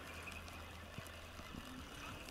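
Quiet riverbank ambience: a faint, steady low rumble of wind on the microphone, with one soft click about a second in.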